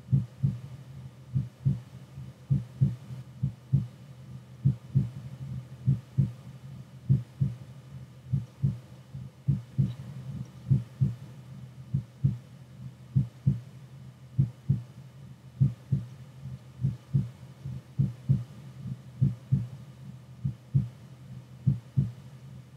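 A heartbeat: low double thumps (lub-dub) repeating at a slow, even pace over a faint steady hum.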